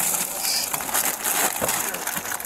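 Plastic wrapping crinkling and rustling as a bag is pulled open and handled, with scattered small clicks.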